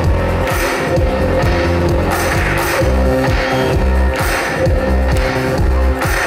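Live rock band playing through a stage PA, with electric and acoustic guitars, a pulsing bass line and drums keeping a steady beat.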